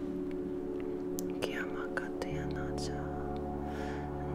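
Ambient meditation music of sustained, layered tones, with a deeper low tone coming in a little past two seconds. Faint whispering sounds over it around the middle.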